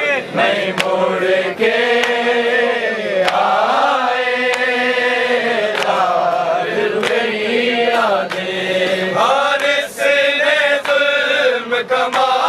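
Men's voices reciting a Shia noha (lament) together, long drawn-out melodic phrases that rise and fall slowly. Sharp slaps of hands striking chests (matam) cut in now and then.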